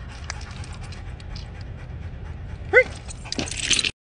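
Belgian Malinois panting steadily, with one short, high yelp about three seconds in and a fainter call after it. A brief rustling hiss follows just before the end.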